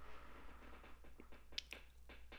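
Near silence: faint room tone with a few faint short clicks, the clearest about one and a half seconds in.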